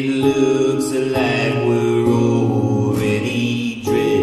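Man singing long held notes into a microphone over an acoustic guitar, with a brief break and a fresh note just before the end.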